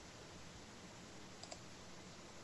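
Near silence: dead air on a phone-in line, faint hiss with two tiny clicks, one at the start and one about a second and a half in. The guest's call has dropped.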